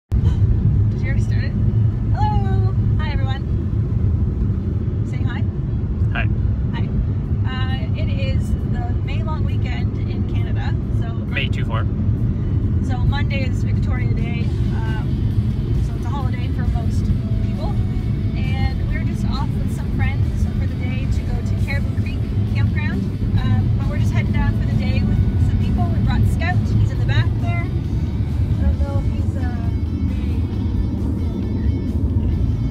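Steady low road rumble from inside a moving car, with music and a voice over it.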